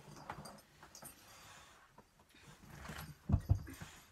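A person getting up and walking off across the room, with rustling movement and two heavy footfalls close together a little past three seconds in.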